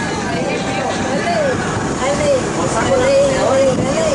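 Women's voices talking and calling out over the steady noise of a boat's engine and the wind.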